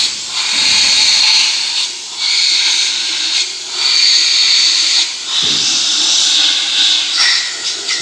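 Compressed-air blow gun hissing in four long bursts, each lasting one to two seconds, as air is blown through the oil galleries of a diesel engine block to clear out dust and oil residue.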